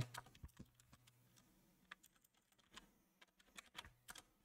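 Faint computer keyboard keystrokes, a few isolated taps spread out with a quick little run of them near the end.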